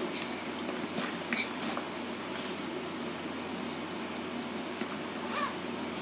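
Steady background hiss of a quiet room, with a few faint, brief rustles of a fabric backpack and its contents being handled.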